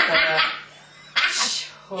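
A woman laughing hard in two loud, breathy bursts, one at the start and one just past the middle, with a short gap between them.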